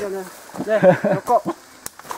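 A man's voice speaking briefly, with one sharp click near the end.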